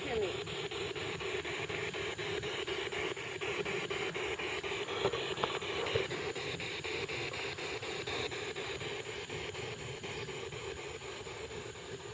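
Spirit box radio scanner sweeping through stations: steady static chopped by rapid, even clicks, with brief fragments of radio sound.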